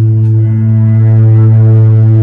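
Electric bass played through an ambient effects pedal board, holding one steady low drone with softer sustained notes shifting above it.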